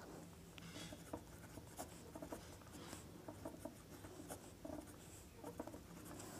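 Pen writing on paper: many short, faint strokes as numbers and symbols are written out.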